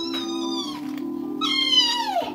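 A meowing call over background music with sustained notes. A held call comes early, and a longer one, falling steeply in pitch, comes near the end.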